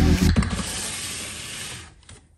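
A plastic storage basket sliding across a pantry shelf, a steady scraping hiss that fades out, just after background music stops.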